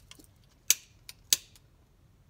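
Two sharp clicks about two-thirds of a second apart, with a few fainter ticks, as small hard objects are picked up and handled on a tabletop.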